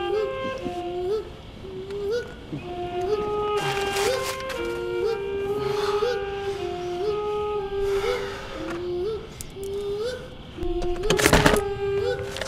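Music: a slow, flute-like melody of held notes with a small upward slide into each, over a higher harmony line. Brief noises break in a few times, the loudest about eleven seconds in.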